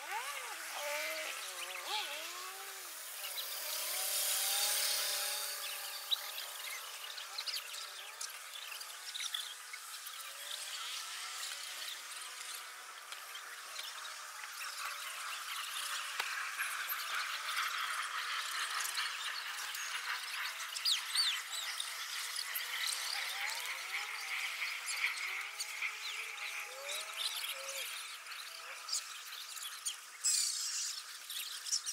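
Outdoor ambience of birds chirping and calling: many short, high chirps, with a few lower sliding calls. A brief rush of hissing noise swells and fades about four to five seconds in.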